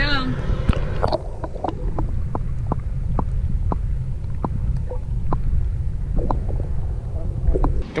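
Muffled underwater sound from an action camera held below the water surface: a dense low rumble with faint clicks about two or three a second. It sets in about a second in as the camera goes under and cuts off suddenly near the end.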